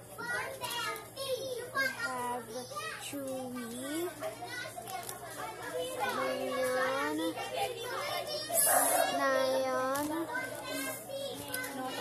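Children's voices talking throughout, in pitched, wavering bursts.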